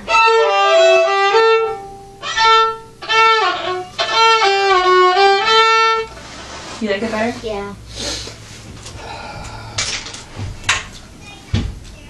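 Two violins playing a slow, simple melody together in sustained bowed notes for about six seconds, with a couple of short breaks between phrases. Then the playing stops, leaving a brief murmur and scattered light taps and knocks, with a low thump near the end.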